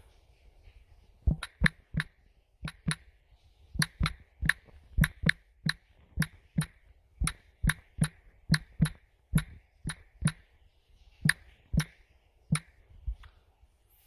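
A run of sharp clicks or taps, about two to three a second and irregularly spaced, some in close pairs, starting about a second in and stopping near the end.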